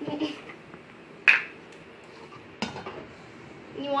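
Two sharp plastic clicks, a loud one about a second in and a softer one past halfway, as the plastic cap comes off a vegetable oil bottle and the plastic measuring cup is handled on the countertop.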